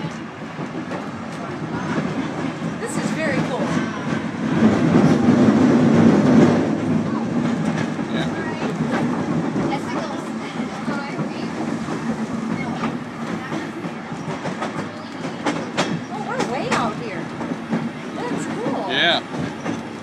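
A train rolling along the rails, heard from the open end of a car: a steady rumble of wheels on track with scattered clicks. It grows louder a few seconds in, then settles back.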